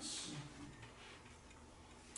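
Quiet room tone with faint, light ticking.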